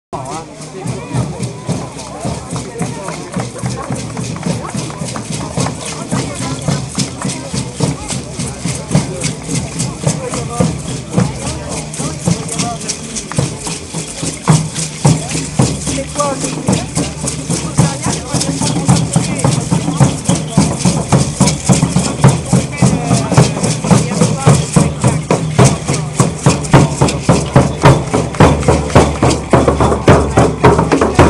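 Aztec-style folkloric dance music: a fast, steady drumbeat with shaken rattles, growing louder toward the end, over crowd talk.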